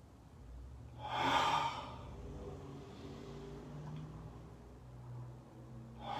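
A man's deep breathing: a loud, breathy exhale through the mouth about a second in, then a low steady hum, and another loud breath starting at the very end.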